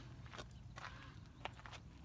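Footsteps on a gravel and dirt path: a few irregular steps, the loudest about a second and a half in.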